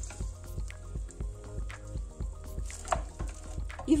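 Soft background music with short clicks and rustles of a wooden spoon stirring dry shoestring potatoes and chicken in a steel pot.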